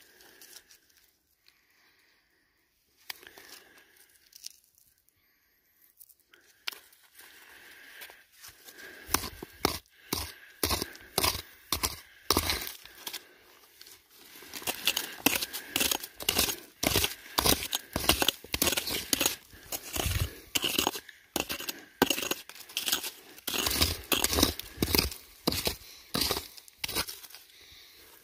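Digging into loose, rocky bedrock with a rock pick and gloved hands: after a quiet start, a long run of short scraping strikes, about two a second, begins about seven seconds in.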